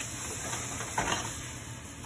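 Faint steady hiss with a single light knock about a second in, as a silicone spatula stirs melting marshmallows and chocolate chips in a metal pot on the stove.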